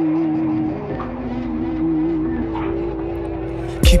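Hip-hop beat intro: a sustained, slightly wavering melodic sample over a low drone, with no drums. Near the end the drums hit and a rapped vocal comes in.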